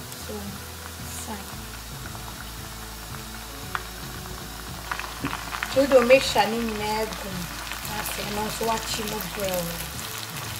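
Sliced onions frying in hot oil, a steady sizzle. From about halfway, a spatula stirring freshly added chopped spring onion and peppers through them adds light scraping clicks.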